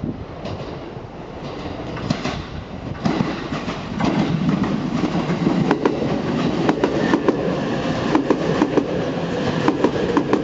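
JR East E257-500 series electric train pulling into a station, growing louder as its cars reach and pass close by. Its wheels click sharply over the rail joints, more often once the cars are passing, over a steady running rumble.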